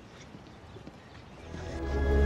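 Quiet outdoor film ambience with faint light steps, then the orchestral film score fades in about a second and a half in, rising into sustained held chords.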